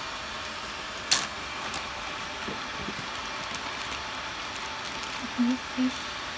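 Steady hiss of water heating in an electric hot pot set to maximum, before the boil. About a second in comes one sharp crinkle, fitting the plastic zip bag being handled.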